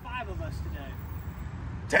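Low, steady rumble of road traffic, with a faint voice in the first half second.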